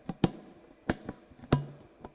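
Hard plastic bowls and lidded containers knocking as they are handled and set down: three sharp taps about two-thirds of a second apart.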